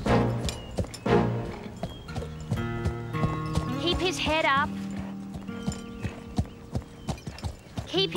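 Horse hooves clip-clopping on the arena's dirt, with a horse whinnying about four seconds in. Background music with sustained notes plays underneath, and two loud hits come in the first second.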